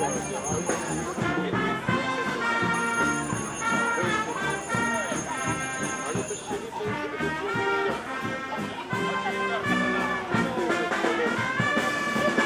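Brass band playing live: sustained brass chords and melody over a steady drum beat.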